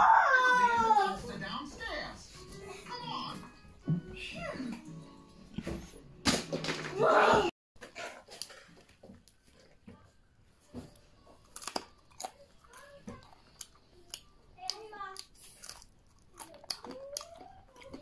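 A young child's high voice chattering and calling out, with a loud shout or squeal about seven seconds in; then the sound cuts off suddenly and a quiet room follows, with scattered light clicks and faint voices.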